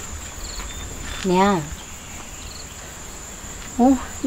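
Crickets chirring in a steady high-pitched drone, with a woman's long moan, falling in pitch, about a second and a half in and another short vocal sound just before the end.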